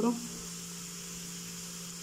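A steady low hum with a faint hiss above it, unchanging and without clicks or knocks.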